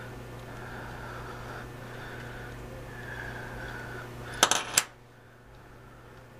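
A small metal tool clattering down on a wooden tabletop: three or four sharp clicks within half a second, about four and a half seconds in, over a faint steady hum.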